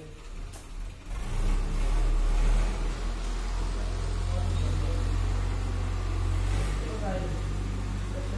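A motor engine running, a low rumble that swells about a second in and then holds steady.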